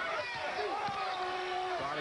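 A man's play-by-play voice on a TV basketball broadcast, over steady background crowd noise in the arena.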